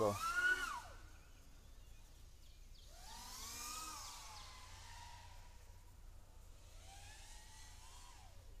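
FPV racing quadcopter's brushless motors (Kingkong 2205 2350KV) spinning DAL four-blade props, a whine that rises and falls in pitch with throttle as it flies. There are three swells: one at the start, a longer one about three to four seconds in, and a rise near the end.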